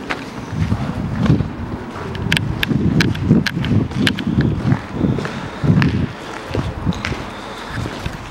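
Footsteps of a person walking at a steady pace over a concrete floor strewn with debris, about two thuds a second, with scattered sharp crunches and clicks from the debris underfoot.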